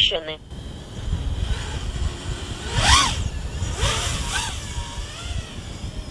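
A small racing quadcopter drone's electric motors whining as it flies past, the pitch climbing to a peak about three seconds in and dropping away, with a second, shorter rise and fall just after. A low rumble runs underneath.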